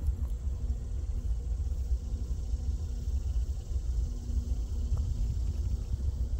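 Low, uneven rumble of a distant diesel freight locomotive approaching slowly, with a faint hum that swells and fades.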